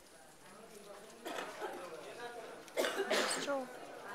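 A person's voice: a few quiet voice sounds, then two short, loud, harsh vocal bursts near the end.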